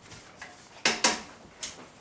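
Kitchen clatter: three sharp clinks of a utensil knocking against cookware, two close together about the middle and a third half a second later.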